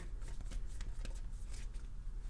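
Tarot cards being shuffled by hand: a quick, irregular run of soft card clicks and flutters.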